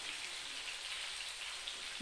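Pieces of meat frying in oil in a clay tajine, a steady, even sizzling hiss.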